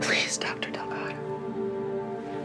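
A woman's breathy, whispered vocal sounds in the first second, over soft background music of sustained held chords.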